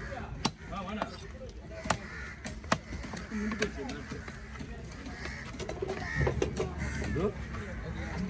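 Long fish-cutting knife chopping through diamond trevally pieces onto a wooden chopping stump: three sharp chops in the first three seconds, the last the loudest, over background voices and cawing.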